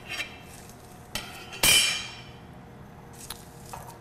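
Metal kitchen utensils clinking against a stainless steel pot: a light clink at the start, then one loud clang about a second and a half in that rings briefly, with a few faint clicks near the end.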